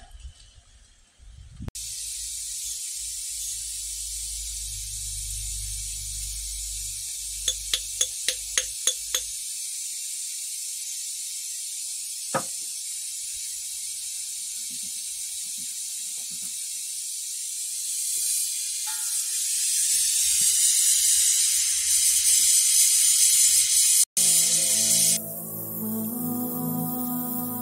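Gas torch flame hissing as it heats a crucible of gold powder to melt it, the hiss growing louder about eighteen seconds in. A quick run of about seven clicks comes around eight seconds in, and soft music starts near the end.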